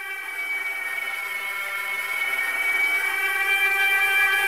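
Sustained synthesizer drone, one held tone with many overtones, slowly swelling in loudness as the intro of an electronic remix.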